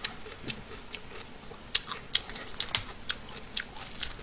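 Small irregular clicks and smacks of a person eating at a table, chewing a mouthful and handling food, about a dozen in a few seconds, the sharpest just under two seconds in.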